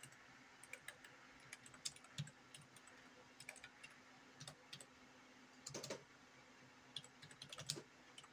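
Faint computer keyboard typing: irregular key clicks, with a quick run of keystrokes about six seconds in and another near the end, over a faint steady hum.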